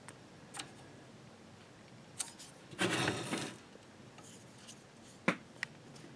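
Faint handling noises of a circuit board on a workbench: a few light clicks, a brief scraping rub about three seconds in, and a sharper click near the end, as the board is shifted to a new position.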